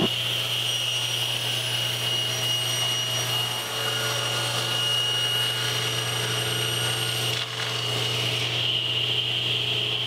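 Table saw running with a steady low hum and a high whine while cutting a strip off a birch plywood drawer back, the blade raised. The tone shifts about seven and a half seconds in.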